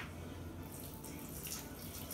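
A thin stream of vinegar poured from a can, trickling faintly into a bowl of chopped tomatoes, chiles and onion.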